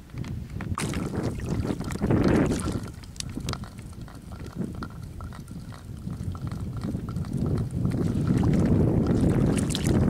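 Wind buffeting the microphone: a low, uneven rumble that grows stronger in the second half, with scattered small clicks and rustles in the first few seconds.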